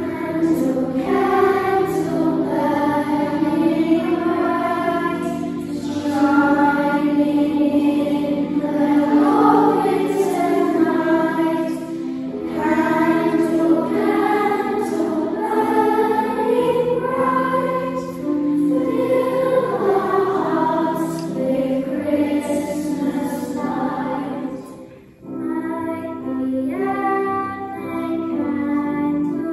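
A children's choir singing together, phrase after phrase, with a brief breath between phrases near the end.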